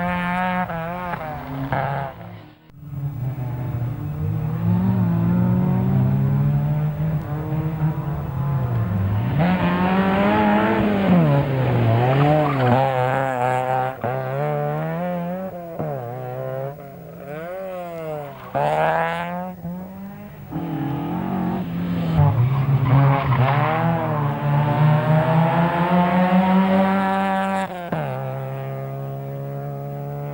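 Group N Vauxhall Astra GSi rally car's four-cylinder engine revving hard at speed, the note climbing and dropping again and again through gear changes, with a brief sudden dip about two and a half seconds in.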